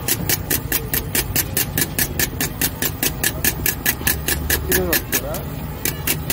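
Egg mixture being beaten by hand in a steel bowl, a quick, even swishing of about five strokes a second, over a steady low hum.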